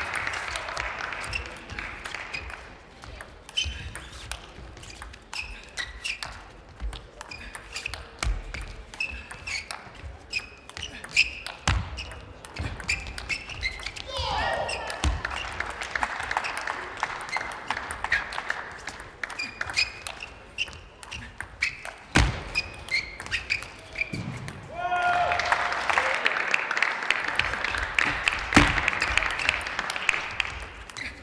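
Table tennis rallies: the celluloid ball clicking off bats and the table in quick strings of sharp ticks, echoing in a large hall. Bursts of crowd applause with some shouts come about halfway and again near the end, after points.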